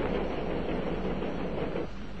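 Steady mechanical rumble with a hiss over it, without rhythm or pauses.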